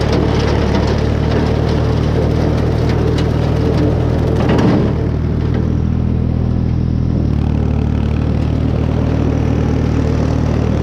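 Ford 3600 tractor's three-cylinder engine running steadily under load, driving a bush hog rotary cutter through tall grass and brush. The cutting noise rises to a brief loud surge about halfway through, then thins out, leaving mostly the steady engine note.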